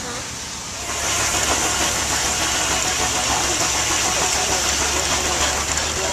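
Steam-driven reciprocating pump running, with a loud steady hiss of escaping steam over a low hum. The sound cuts in suddenly about a second in, after a short stretch of quieter background.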